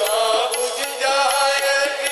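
Hindi devotional bhajan: a male voice sings over a sustained harmonium, with tabla strokes keeping the beat.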